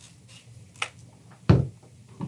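A light click, then a single solid thump about a second and a half in as a Rowenta Pro Master steam iron is lifted off a denim hem and set down on the ironing board.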